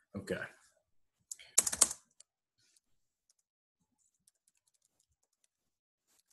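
Typing on a computer keyboard: a quick, loud run of keystrokes about a second and a half in, then faint, scattered key clicks.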